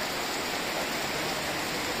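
Rain falling steadily: an even, unbroken hiss of rainfall.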